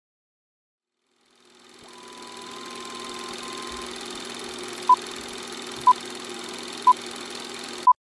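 A steady machine-like hum with hiss fades in, then four short, loud high beeps sound one second apart, like a countdown, before everything cuts off abruptly.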